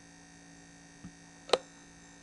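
Steady low electrical mains hum from the recording chain, with a faint tick about a second in and one sharp click about a second and a half in.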